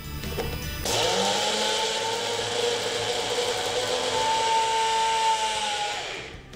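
Electric kitchen blender grinding fresh coriander and mint leaves with chilli and spices. It starts suddenly about a second in, runs steadily for about five seconds, then stops at the end.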